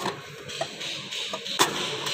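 A sheet of expanded metal mesh being pushed by hand into a car's cowl air-intake opening, scraping and clicking against the body panel, with one sharper click about one and a half seconds in.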